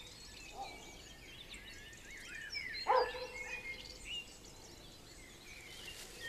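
Outdoor ambience of small birds chirping and singing, with one louder, lower call about three seconds in.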